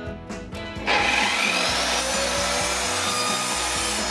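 A 1200 W mitre saw with a 210 mm multi-material blade cuts through a laminate floorboard. The cut starts suddenly about a second in and runs steadily.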